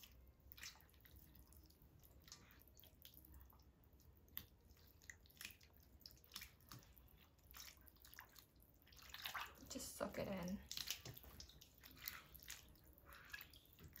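Hands breaking apart fresh wide rice noodles in a bowl of water: faint, scattered small splashes and drips.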